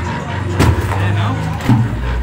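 An engine running steadily with a low hum, with a couple of knocks about half a second in and near the end.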